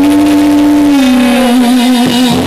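A live band with a female singer holding one long sung note, which steps down to a lower held note about a second in.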